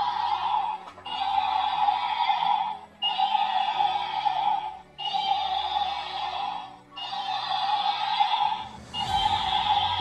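Battery-powered walking toy dragon playing its built-in electronic sound effect through a small speaker, one clip of roughly two seconds repeated about five times with short breaks between repeats.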